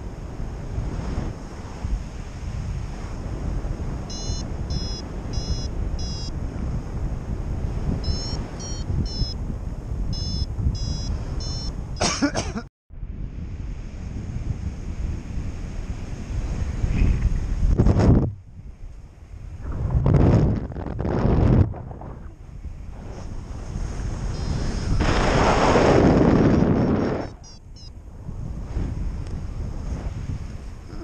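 Wind rushing over the microphone of a paraglider in flight, swelling into loud gusts in the second half. A paragliding variometer beeps in quick runs of short high chirps for several seconds early on, and briefly again near the end.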